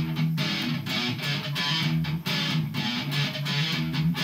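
1998 Squier Stratocaster electric guitar being strummed in a rhythmic chord pattern.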